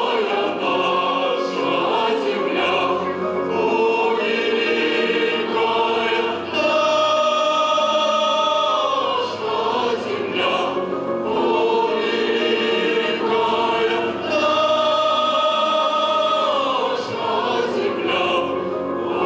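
Mixed choir singing a slow piece in long held chords, phrases of a few seconds swelling and releasing, with male voices singing into microphones among them.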